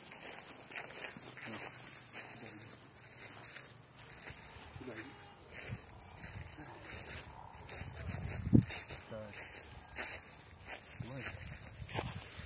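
Footsteps through grass with the rustle of a handheld phone, faint indistinct voices, and a single low thump about eight and a half seconds in.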